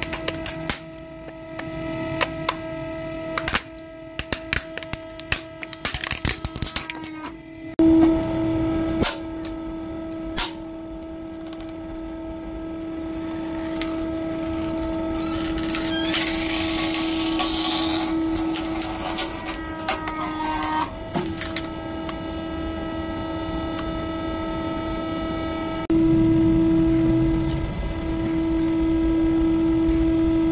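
Hydraulic press running with a steady hum while it crushes plastic toys. A plastic dollhouse cracks and snaps in many sharp clicks over the first several seconds. A burst of crackling noise comes about halfway through, and the hum grows louder near the end.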